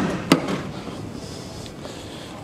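Boot lid of a 2006 Mercedes-Benz E280 being unlatched and lifted open: two sharp clicks from the latch and handle in the first half second, then a fading rustle as the lid rises.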